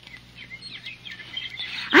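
Small birds chirping: a run of short, quick chirps, a background sound effect for an outdoor park scene in a radio drama.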